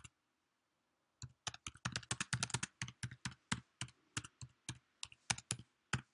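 Typing on a computer keyboard: a short pause, then a fast, fairly quiet run of keystrokes from about a second in until just before the end.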